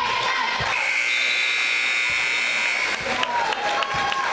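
Gym scoreboard horn sounding one steady electronic buzz for about two seconds, starting under a second in, over crowd chatter and cheering: the end-of-game horn with the clock at zero in the fourth period.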